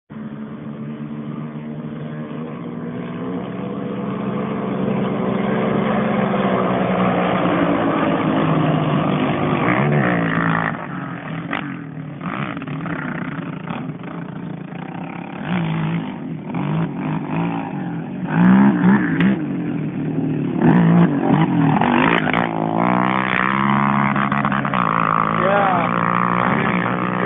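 Quad ATV engines running hard. The note climbs steadily over the first ten seconds, then revs up and down repeatedly.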